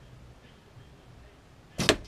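Win&Win recurve bow shot: the string released from full draw near the end, one short, sharp snap.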